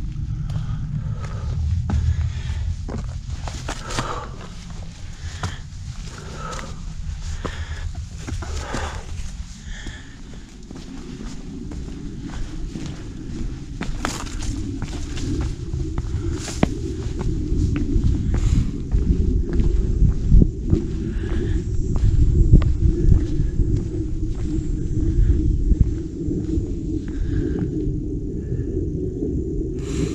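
Footsteps and scuffs on a rocky, root-covered trail with sharp clicks for about the first ten seconds. Then a steady low rumble of wind on the microphone takes over on the open rock summit, growing louder in the middle.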